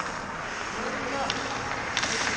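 Ice skate blades gliding and scraping on rink ice, over a steady arena noise with faint voices in the background.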